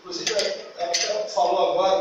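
A man speaking Portuguese into a handheld microphone, in a continuous stream of speech with short breaks.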